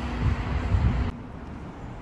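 Steady low outdoor rumble of traffic or machinery with a faint hum. It cuts off abruptly about a second in and gives way to quieter, even outdoor background noise.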